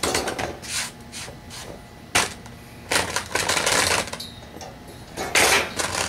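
Metal handling clatter: clinks, knocks and gritty scrapes as an iron ring stand is shifted about on a sand-strewn sheet-metal tray, with a longer scraping stretch about three seconds in and a loud cluster of knocks near the end.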